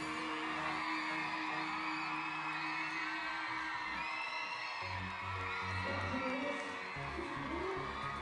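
Pop music playing, with a crowd of young fans screaming and whooping over it. A held chord fades about three seconds in, and a pulsing low beat comes in near the middle.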